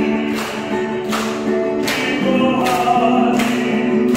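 A hymn sung to a strummed guitar, with chords struck in a steady beat about once every three-quarters of a second under the held sung notes.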